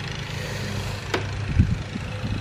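Handling noise of a carbon-fibre rear wing being shifted and pressed onto a car's trunk lid, with a sharp click about a second in and a dull bump soon after. A steady low hum runs underneath.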